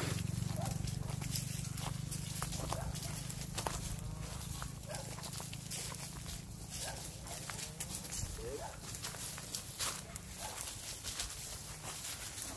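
Footsteps crunching through dry fallen leaves, with scattered crackles and snaps, over a low rumble that fades out after about eight seconds.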